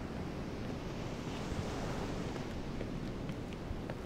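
Ocean surf and seaside wind: a steady rushing hiss that swells about a second in as a wave washes up, then eases off.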